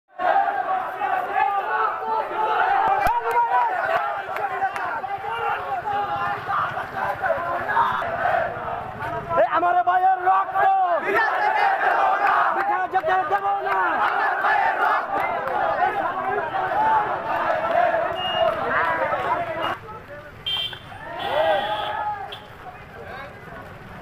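A large crowd of marching protesters shouting slogans, many voices together. It grows quieter about two seconds before the end.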